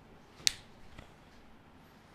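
A single sharp click about half a second in, then a fainter tick about half a second later, over quiet room tone.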